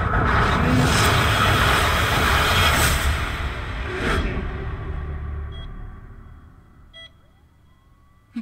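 Film trailer sound effect of a freefall through the sky: a loud rushing roar of wind that fades away over several seconds, then two faint short beeps.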